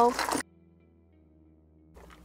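A woman's voice holding a drawn-out syllable, cut off abruptly about half a second in, then near silence with only faint steady low tones for over a second.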